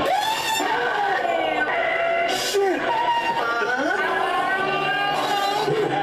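Excited voices from a montage of reaction-video clips, people exclaiming and shouting with sharply rising and falling pitch, played over background music.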